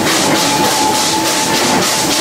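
Steam locomotive working a train, heard from a carriage behind it: a steady, even chuffing from its exhaust at about four beats a second.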